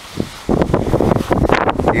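Wind buffeting the microphone, a loud irregular rumble that starts about half a second in.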